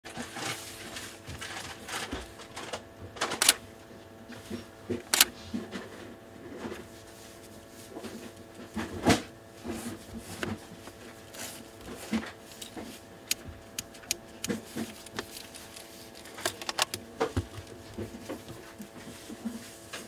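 Handling noise from gloved hands turning a Sony E 18-135mm zoom lens and mirrorless camera body: irregular light clicks and knocks of plastic and metal, with several sharper, louder clicks among them.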